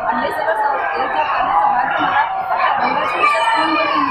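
Speech only: a woman talking into a handheld microphone, with the chatter of other voices behind her.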